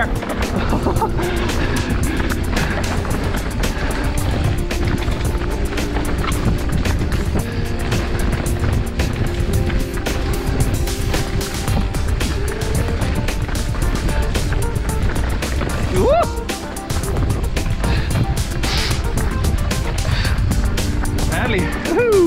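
Wind rushing over the on-board camera's microphone together with the rumble and rattle of a mountain bike riding down a dirt forest trail, with music playing underneath. A short laugh comes about two seconds in.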